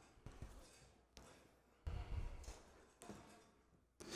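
Near silence in a large hall, broken by a few faint knocks and bumps, the loudest a low thump about two seconds in.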